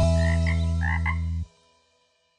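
A few short cartoon frog croaks over the held low closing note of a children's song. The note cuts off suddenly about one and a half seconds in, leaving silence.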